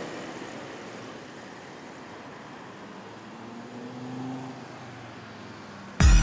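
Steady city road traffic noise, swelling slightly about four seconds in as a vehicle passes.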